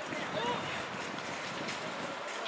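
Distant shouting of football players and coaches across the pitch, a few brief calls early on, over a steady background hiss.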